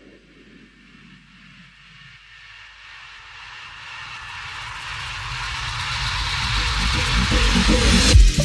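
A noise-sweep riser in a house-music DJ mix: a hiss that swells steadily louder and brighter over several seconds, with a falling tone early on. This is the build-up before the beat drops.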